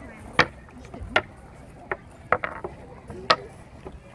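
Painted rocks clicking sharply against each other and the wooden board as they are set down in a tic-tac-toe game, several separate clicks spread over a few seconds.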